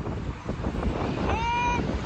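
Wind buffeting the microphone, an uneven low rumble, with a short high-pitched call from a child's voice about a second and a half in.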